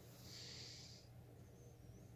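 Near silence: room tone, with a faint soft hiss lasting about a second near the start.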